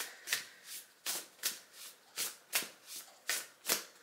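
A deck of oracle cards being shuffled by hand, about three short strokes a second, evenly paced.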